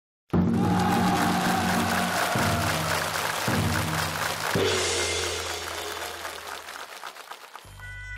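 Stage music with a studio audience applauding over it. It starts abruptly and fades away over several seconds.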